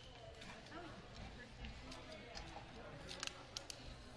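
Faint, distant chatter of people in a large gym, with a few short sharp clicks near the end.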